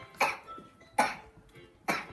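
Three short, sharp percussive hits, evenly spaced just under a second apart, with faint background music.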